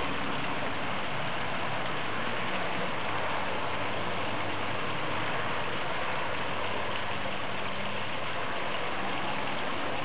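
A steady, even rushing noise with a faint low hum underneath, unchanging throughout.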